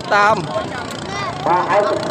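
Speech: a voice talking loudly, with a high shouted call just after the start and a drawn-out syllable near the end.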